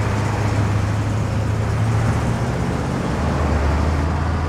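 Road traffic: a steady rush of passing vehicles' tyres and engines, with a low engine hum underneath.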